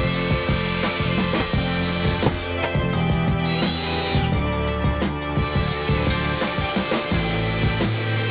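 Cordless drill driving screws into the ceiling trim around a roof fan opening, its motor whining up and down in short runs, under background music.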